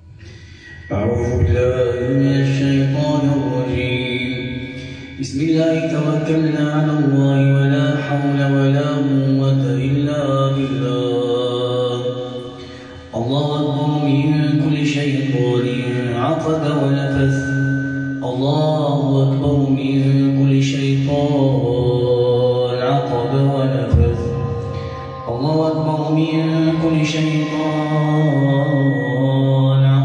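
A man chanting Quranic ruqyah recitation in slow, melodic, drawn-out phrases, with short pauses for breath about 5, 13 and 24 seconds in.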